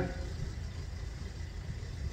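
A pause in speech, filled by a low, steady background rumble.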